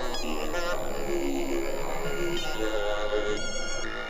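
Experimental electronic synthesizer music: a dense, noisy drone under short stepped synth notes, with a thin, steady high-pitched whine above it.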